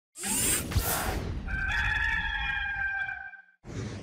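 Opening sting of a sports video: a rush of whooshing noise, then a rooster crowing once for about two seconds as it fades, and a short whoosh just before the picture flashes.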